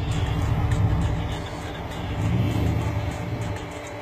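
Rock-crawling Jeep's engine running at low revs as it creeps down a steep rock ledge, with a brief rise in revs about two seconds in.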